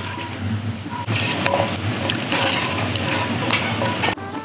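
Sweet-and-sour sauce base of carrot and cucumber slices in soy-sauce liquid sizzling in a steel frying pan while long wooden chopsticks stir it. The sizzle is a steady hiss that grows louder about a second in, with a few light clicks from the chopsticks.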